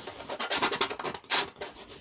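Paint being rubbed onto a canvas: a quick run of short rasping strokes about half a second in, then one louder stroke past the middle.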